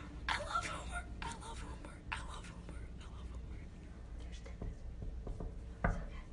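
Hushed whispering voices, then a single knock on a room door near the end.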